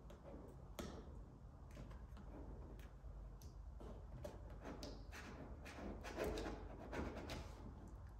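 Faint scraping and rustling of a squeegee pressed over vinyl graphic film and its paper transfer tape, with scattered small ticks; the swipes grow louder about five seconds in and ease off near the end.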